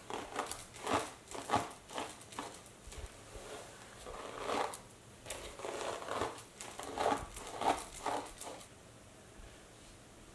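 A paddle hairbrush drawn again and again through long hair: a run of quick brushing strokes, about two a second, that stop shortly before the end.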